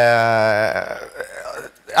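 A man's drawn-out 'eeh' hesitation sound, held at one steady pitch, trailing off less than a second in. A quieter stretch of faint noise follows.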